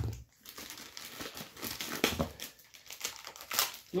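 Clear plastic bag crinkling in irregular bursts as it is pulled open around a stack of comic books.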